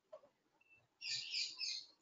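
A short burst of high-pitched chirping that starts abruptly about a second in and lasts just under a second.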